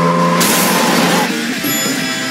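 Trailer music with a loud rushing burst of noise from about half a second in, lasting nearly a second, like a vehicle sound effect laid over the score.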